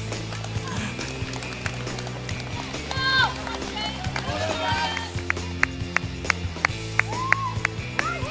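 Running footsteps on a tarmac road, even slaps about three a second in the second half, over steady music and scattered spectators' voices.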